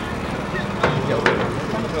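Outdoor crowd chatter from spectators and players at a rugby pitch over a steady low rumble, with two sharp smacks close together near the middle.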